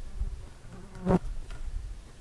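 An insect, a fly or bee, buzzes briefly close to the microphone about a second in, over a low rumble.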